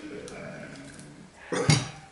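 One sharp clattering knock near the end, a kitchen utensil set down against the table or the pan of spaghetti.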